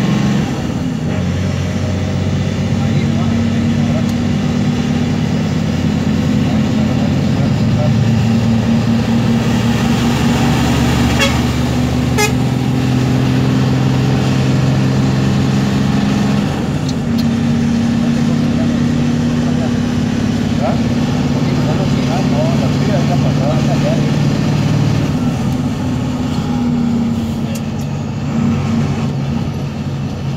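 Engine of a road vehicle running steadily while driving, a low continuous hum whose note shifts about halfway through. It is heard from on board, with road noise under it.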